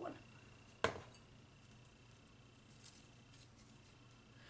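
A ceramic mug set down with a single sharp knock about a second in, then faint rustling as a folded paper slip is opened out, in a quiet small room.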